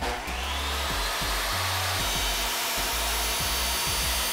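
Benchtop table saw cutting through an epoxy-resin-coated willow slab: a steady, dense whine and hiss of the blade in the wood, rising in pitch just after it starts.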